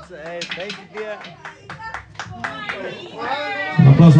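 A few people clapping in scattered, irregular claps, with voices talking and calling out over them; the band's drumming has stopped.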